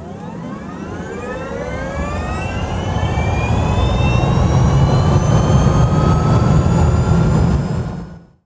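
Intro sound effect of an engine or motor spooling up: a rising multi-tone whine over a low rumble that builds in loudness, then falls away right at the end.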